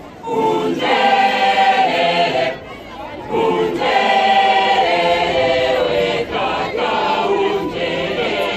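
A large choir of women's and men's voices singing together, in three sung phrases of a few seconds each, split by short breaks.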